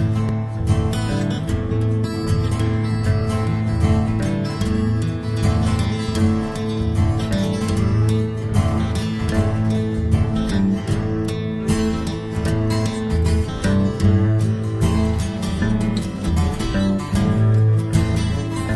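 Acoustic guitar played without singing: a steady, busy run of strummed and picked chords.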